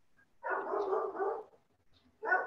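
A dog barking: one drawn-out bark lasting about a second.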